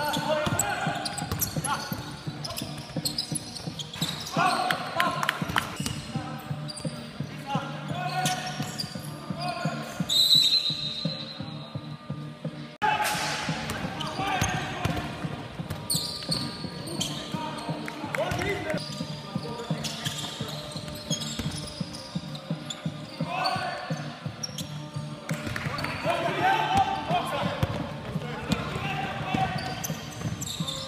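A basketball bouncing on a hardwood gym floor during play, with players' shouts and footfalls echoing in a large sports hall. The sound changes abruptly about 13 seconds in, at an edit.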